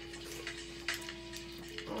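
Quiet background music holding one steady note, with a few small sharp clicks and cracks of crab-leg shells being picked apart by hand.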